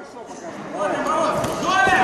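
Voices calling out in a large, echoing sports hall, starting about a second in, with a short thud near the end.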